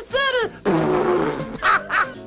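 Cartoon character's gibberish voice: a short gliding grumble, then a rough, noisy blown raspberry-like sound lasting nearly a second, and a brief vocal burst near the end.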